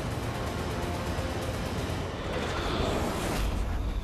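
Film sound of an elevated train running along its tracks: a steady rushing rumble that swells in the second half, with musical score mixed underneath.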